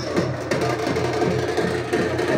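Teenmaar music: a loud, fast, even drumbeat.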